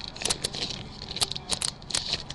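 Foil-lined card-pack wrapper crinkling in irregular crackles and clicks as the pack is opened.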